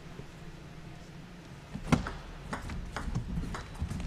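Table tennis ball clicking off rackets and the table in a doubles rally: a quick run of sharp clicks starting about two seconds in, over a quiet hall.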